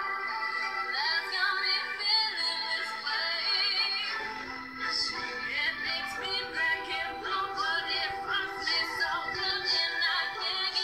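A woman singing a slow pop ballad, with wavering vibrato on held notes.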